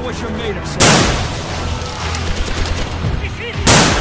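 Two gunshots about three seconds apart, each sharp and loud with a short ringing tail, over a steady low rumble.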